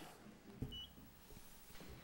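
Quiet room tone with one brief, faint electronic beep about three-quarters of a second in, just after a soft low thump.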